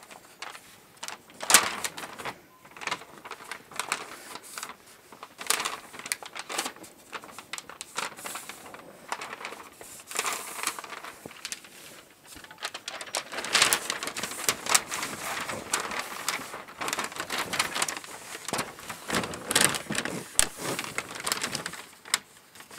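A large sheet of pattern paper rustling and crinkling under the hands as a line is creased into it and the sheet is folded, with many irregular sharp crackles.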